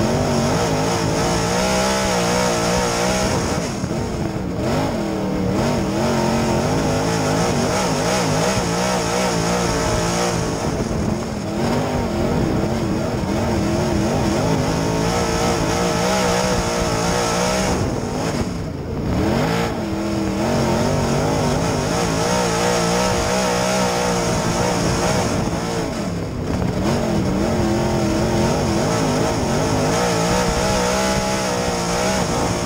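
Dirt Super Late Model race car's V8 engine at racing speed, heard from inside the cockpit. The engine note dips and climbs back four times, about every seven seconds, as the car lifts for the turns and powers out again.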